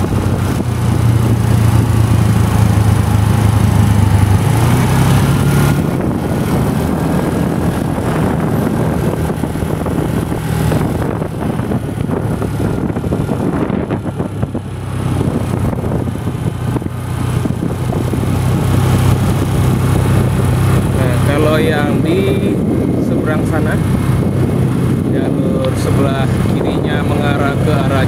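Engine and road noise from a vehicle driving along a road: a steady low engine hum whose pitch shifts a few times, briefly dropping about halfway through before picking up again.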